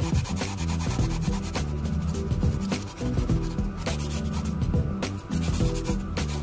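Hand sanding of a small metal model-car part with an abrasive sanding block, in quick repeated rubbing strokes, over background music.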